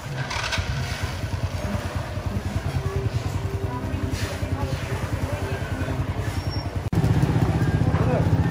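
A small engine running at a steady idle, a low rapid putter. It cuts out for an instant near the end and comes back louder.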